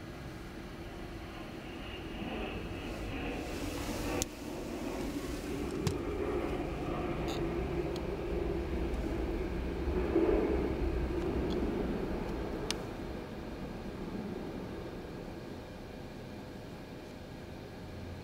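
Jet airliner passing overhead on approach: a low engine rumble that grows louder to a peak about ten seconds in, then fades away. A sharp click about four seconds in.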